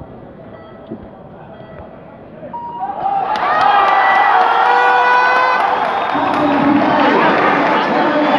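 Velodrome crowd in the stands, quiet at first, then breaking into loud cheering and shouting about three seconds in that carries on to the end.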